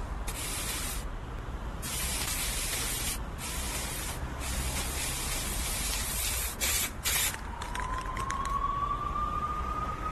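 Aerosol spray paint can hissing in long bursts broken by short pauses, as paint is sprayed onto a brick wall. A thin tone that slowly rises in pitch comes in over the last couple of seconds.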